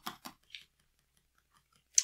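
A few brief, soft rustles and clicks of a paper instruction booklet being handled, all within the first half second.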